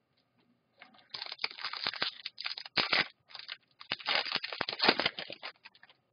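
Plastic wrapping on a pack of hockey cards crinkling and tearing as it is opened by hand: a dense run of rapid crackles starting about a second in.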